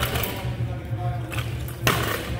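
Three sharp metal knocks and clicks as a steel barbell sleeve and rubber bumper plates are handled, the last one the loudest, over a low steady hum.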